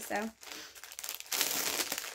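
Crinkling of packaging being handled, starting just after a short spoken word and getting louder in the second half.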